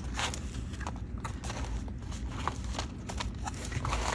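Paper pages of a handmade junk journal being flipped through one after another with the fingers: a run of soft, irregular paper flicks and taps.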